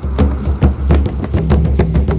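Music with a fast, busy drum beat and heavy bass.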